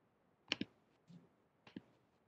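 A few faint computer mouse clicks: two close together about half a second in and another near the end.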